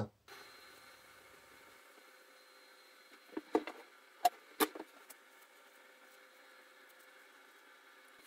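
Faint steady workshop room hum, with a quick cluster of about five light clicks and knocks around the middle: handling of melamine-faced chipboard panels and masking tape while the boards are being labelled.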